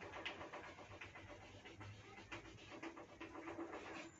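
Chalk on a blackboard: a quick, faint run of short scratches and taps as lines are drawn.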